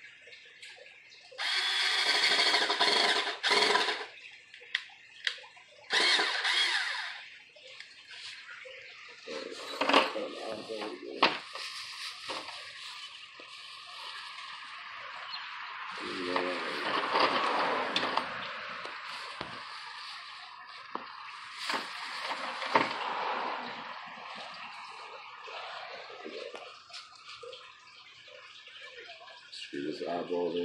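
Cordless drill running in two short bursts, the first about two and a half seconds and the second about a second and a half, boring a pilot hole into a wooden post. Scattered clicks and knocks follow.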